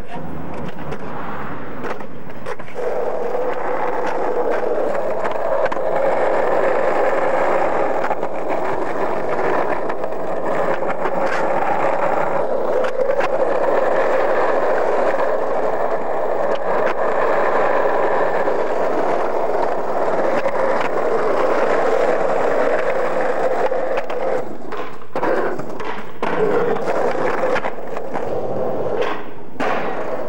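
Skateboard wheels rolling on asphalt and concrete, a steady roar, with a few sharp clacks of the board near the end.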